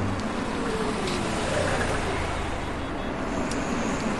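Steady traffic noise from a city bus at a roadside stop, an even rumble with no distinct events.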